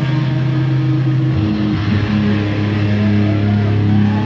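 A live rock band's distorted electric guitar and bass holding a sustained low chord without drums. The chord steps down to a lower note about a second and a half in, and a faint rising whine of amplifier feedback comes in near the end.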